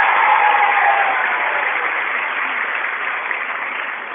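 Audience applauding, loudest at the start and slowly dying down.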